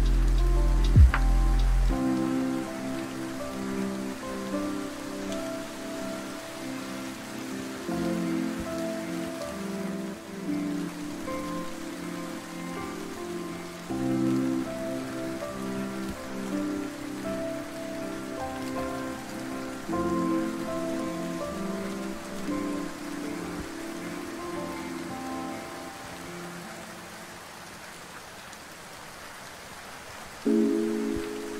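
Steady rainfall hiss under a soft lofi track of mellow repeating chords. A deep bass note stops about two seconds in, and the music thins out toward the end.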